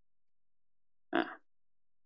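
Near silence, broken about a second in by one short, croaky "uh" from a man's voice, a hesitation sound.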